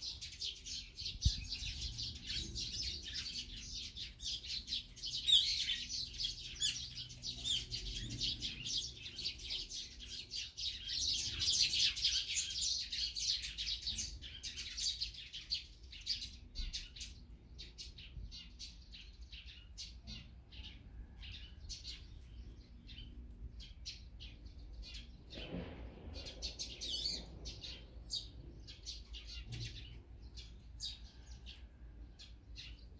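Small songbirds chirping and chattering in a busy flurry of quick high calls, densest in the first half and thinning to scattered chirps later on.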